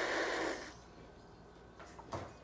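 A person taking a loud, slurping sip of beer, a breathy hiss that stops under a second in.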